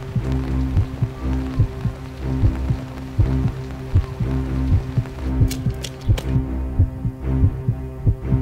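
Suspense film score: a low sustained drone with a steady thudding pulse, about two thumps a second. A soft rain-like hiss sits underneath and fades out about five seconds in.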